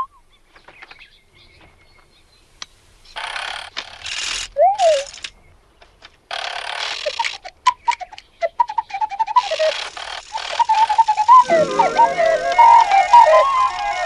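A mechanical owl's sound effects: two bursts of mechanical whirring, a short rising-and-falling whistle between them, then clicks and quick warbling electronic twitters. Music swells in under the twittering in the last few seconds.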